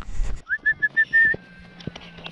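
A quick run of about six short, high whistled notes, the first sliding up, fading into a faint held tone, over a brief low rumble of wind on the microphone at the start.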